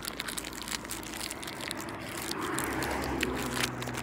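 Biting and crunching into a crispy Butterfinger bar, with the plastic wrapper crinkling: a run of small crackles and clicks. A steady low hum comes in about halfway through.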